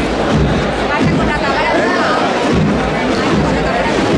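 Crowd of onlookers talking over a procession band playing a march.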